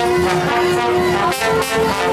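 Brass band of trombones, trumpets and saxophones playing, holding long notes that shift to a new higher chord about one and a half seconds in.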